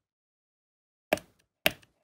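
About a second in, two short knocks about half a second apart: a craft leaf tool pressing and working vein lines into a paper leaf on a leaf pad.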